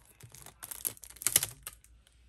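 Plastic-sleeved memo pads crinkling and clicking against each other as a rubber-banded stack is handled and the band is pulled off. A quick run of crackles, loudest a little past halfway, then it stops just before the end.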